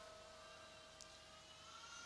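Near silence: room tone with a faint steady hum, and one faint click about a second in.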